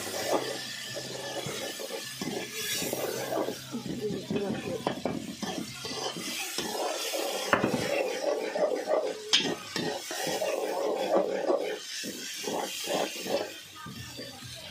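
Metal spoon stirring and scraping a thick frying spice paste in an aluminium pot, repeatedly scraping and clinking against the pot, with a couple of sharper clinks partway through and a light sizzle beneath.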